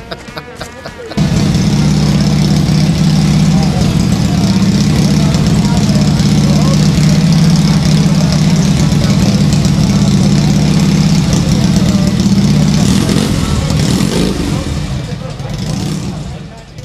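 Motorcycle engine running steadily. It cuts in suddenly about a second in and starts to fade away near the end.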